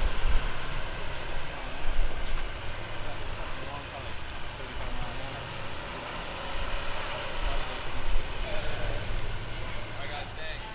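Pickup truck engine running steadily under load as it pulls a pontoon boat on its trailer up the boat ramp, a low rumble with tyre and road noise.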